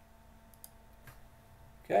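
Quiet room tone with a faint steady hum and a few soft clicks. A voice says "Okay" near the end.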